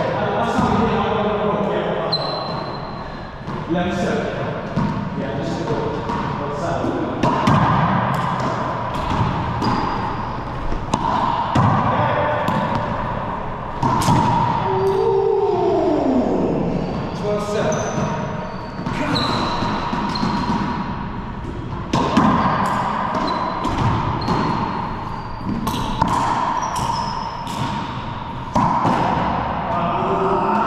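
Racquetball doubles rally in an enclosed court: the rubber ball smacks off racquets, walls and floor in a string of sharp hits that echo around the court, with brief high sneaker squeaks on the hardwood floor.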